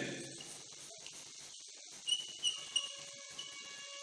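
Chalk writing on a chalkboard: faint scratching, with a few small taps about two seconds in. Thin steady high tones run underneath from about halfway through.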